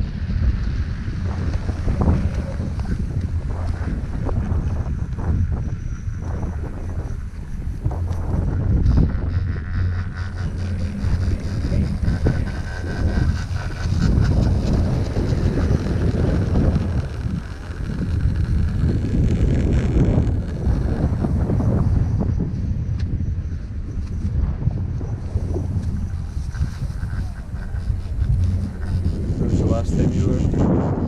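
Wind buffeting the camera microphone on an open chairlift: a low, uneven rumble that swells and dips.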